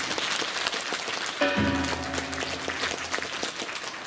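Korean Buddhist ritual music for a jakbeop dance: a dense high shimmer of rapid strokes, joined about one and a half seconds in by a long held pitched tone.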